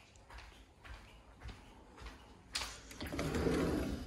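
Faint footsteps on a tiled floor, then a sliding glass door slid open about two and a half seconds in, followed by a louder steady rushing of outdoor air.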